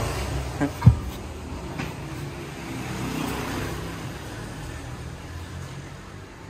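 A metal hoe blade being handled in a car's trunk, with one sharp knock about a second in and a few faint clicks, over a steady low hum.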